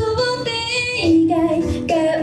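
A young girl singing a Japanese pop song solo into a handheld microphone, holding long notes that step up and then down in pitch, with a music track behind her.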